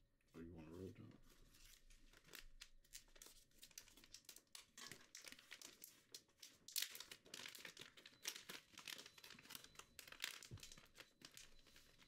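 Faint, irregular crinkling and crackling close to the microphone, with a brief faint voice about half a second in.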